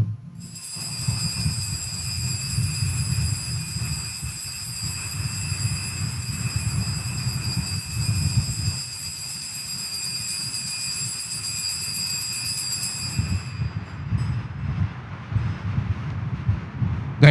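Altar bells rung continuously at the elevation of the consecrated host, a steady high ringing that stops about a second or two before the end, over a low rumble of church room noise.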